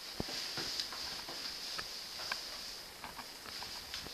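Cardboard costume knocking and rustling as a person shimmies into it: scattered light taps and clicks, with a soft thud just after the start.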